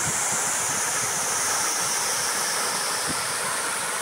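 Small waterfall pouring over rock and splashing into a pool, a steady rush of falling water. It is running full with rainy-season water.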